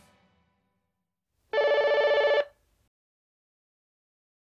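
A telephone rings once: a single loud, rapidly trilling burst of just under a second, starting about a second and a half in.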